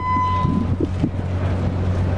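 A steady low hum with wind buffeting the microphone, and a single high electronic beep lasting under a second at the start.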